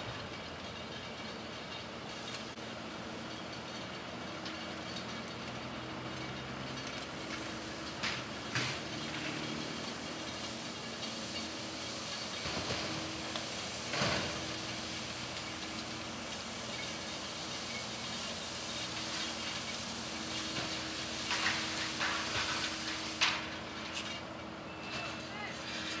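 Roadside crash-scene ambience: a vehicle engine runs with a steady hum over road noise. Now and then come short knocks and clanks, loudest about fourteen seconds in and twice more near the end, as wreckage is handled.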